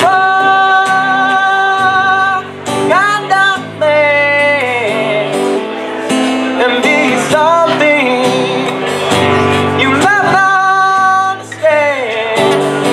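A young man's voice singing long, held notes that bend and slide between phrases, accompanied by a strummed acoustic guitar, both amplified through a PA.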